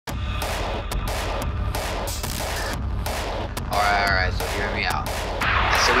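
Harsh, distorted noise chopped into rapid, irregular stuttering bursts over a steady low rumble. A voice cuts through briefly about four seconds in, and a man starts talking near the end.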